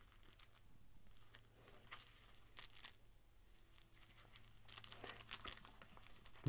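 Faint crinkling of a small clear plastic bag being handled among a knife pouch's contents, in a few brief spells of rustling, the busiest near the end.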